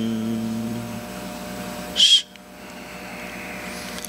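A male voice's held, hummed closing note of a chanted Sanskrit mantra dies away over the first second, leaving a faint steady hum. About two seconds in comes one short, loud, high-pitched sound.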